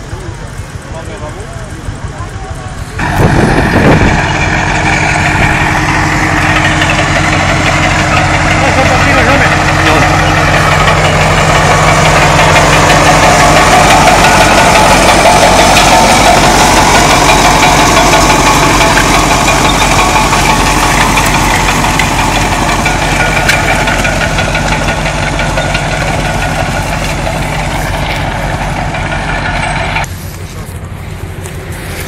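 Tractor engine running under load close by as it pulls a plough through the soil. It comes in suddenly and loud about three seconds in, runs steadily, and eases off a little near the end.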